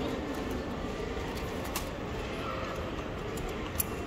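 Steady shop background noise with a few faint, short clicks.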